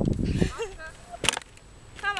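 Wooden dog-agility seesaw board tipping under a small dog and banging down, one sharp crack a little over a second in. Low thumping comes first, then a brief falling squeak.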